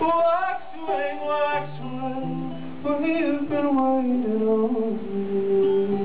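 A man singing live to his own banjo accompaniment; about four seconds in, his voice settles on a long held note.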